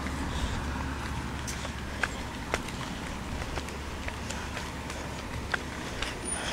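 Footsteps of people walking on a paved path: a few light, irregularly spaced clicks over a steady outdoor hiss and low rumble.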